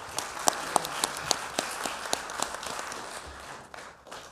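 Audience applauding, a scatter of sharp individual claps within the clatter, dying away near the end.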